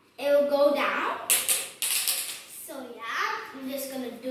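A girl speaking in short phrases that the recogniser did not catch.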